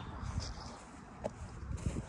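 Faint footsteps of a person walking, with irregular low knocks and a brief tick about a second and a quarter in.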